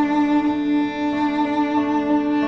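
A cello holding one long, sad and mournful note with vibrato, over quieter low bowed strings, in an orchestral film-score cue.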